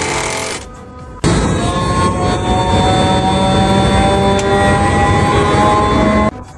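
Electric motor fed by a variable frequency drive starting up and ramping, its whine rising gently in pitch over a rushing machine noise; it comes in suddenly about a second in.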